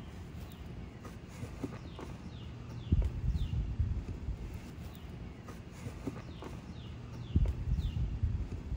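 Mulch being tipped out of a plastic nursery pot and spread by hand into an edged bed: rustling, with two low thuds about three seconds in and near the end. A bird calls repeatedly with short falling chirps.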